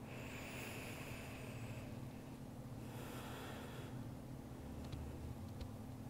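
A person breathing faintly, two slow breaths: the first lasts about two seconds, the second about a second, starting near three seconds in. A steady low room hum runs underneath.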